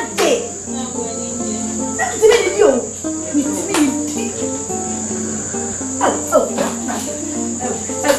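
Crickets trilling steadily in a high, unbroken tone, over background music of held low notes.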